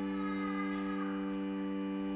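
Pipe organ holding one steady chord.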